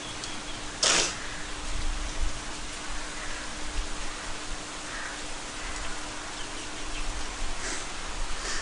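Steady monsoon rain falling on forest foliage, an even hiss, with one sudden short burst of noise about a second in.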